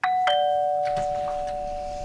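Doorbell chime ringing a two-note ding-dong: a higher note, then a lower one about a quarter second later, both ringing on and slowly fading.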